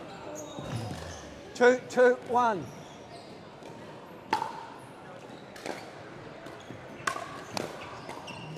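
A voice calls out three short words, a score call, about a second and a half in. A little past four seconds the paddle strikes the plastic pickleball with a sharp pop for the serve, and further pops follow about a second apart near the end as the rally gets going.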